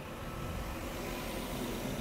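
Steady hum of road traffic on a busy city street.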